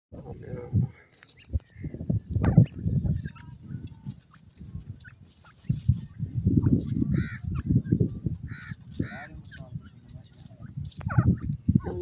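Grey francolins (teetar) giving a few short calls, mostly in the second half, over irregular low rumbling noise.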